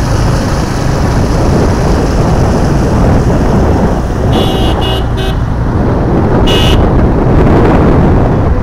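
Auto rickshaw moving along a road: a steady, loud rumble of its small engine and road noise inside the open cabin. A vehicle horn gives three short toots about four to five seconds in, then one slightly longer toot near seven seconds.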